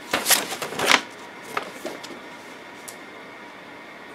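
A folded paper instruction sheet rustling and crinkling as it is handled and folded, loudest in a quick flurry during the first second, then a few faint crinkles.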